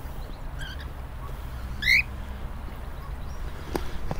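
Cockatiel calling in an aviary: a short call about half a second in, then a louder rising call about two seconds in.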